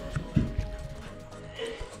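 Running footsteps thudding on a carpeted floor, the loudest thump about half a second in, with background music playing under them.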